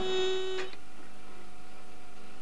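A chord on a plucked guitar, struck once, ringing and slowly fading.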